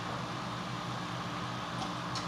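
Steady low mechanical hum with an even hiss of room noise, with a couple of faint ticks near the end.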